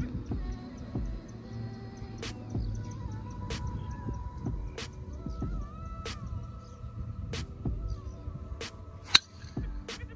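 Background music plays throughout. About nine seconds in, a single sharp crack stands out above it: a driver striking a golf ball off the tee.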